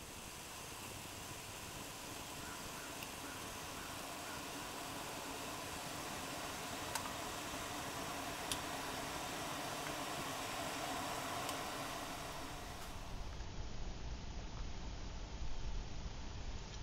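Homemade chimney-style alcohol stove burning methanol under a cup of water, giving a steady soft rushing hiss that slowly grows louder. Near the end the sound turns duller and more uneven.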